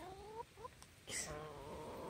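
Hens making faint, soft clucks and trilling calls, with a brief scratchy sound about a second in.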